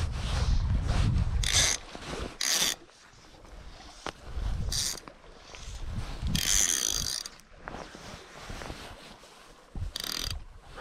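Click-and-pawl fly reel ratcheting in several short bursts as fly line is pulled off the spool, the longest burst about a second long a little past halfway. A low rumble fills the first second and a half.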